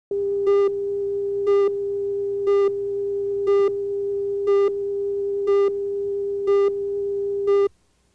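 Steady test tone from a video tape's leader, with a short, brighter beep about once a second, eight beeps in all; tone and beeps cut off suddenly near the end.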